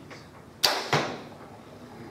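Bowtech Guardian compound bow being shot: a sharp snap of the string release, then the arrow thudding into the target about a third of a second later.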